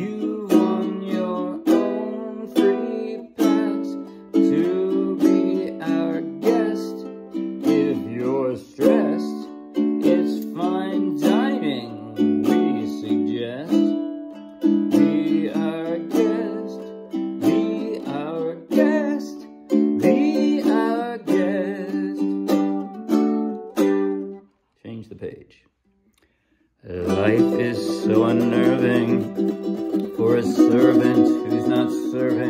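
Ukulele strummed in chords, one stroke after another in a steady rhythm. The strumming stops for about two seconds near the end, then starts again.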